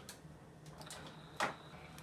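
A single light click or tap about a second and a half in, over quiet room tone with a faint high steady tone.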